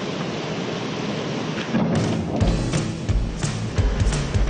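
A person's feet-first jump into a swimming pool from a diving board: a splash and churning water, under background music whose deep regular beat comes in about halfway through.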